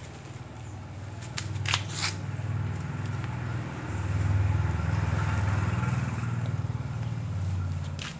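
Engine of a passing motor vehicle, a steady low drone that grows louder to a peak midway and fades near the end.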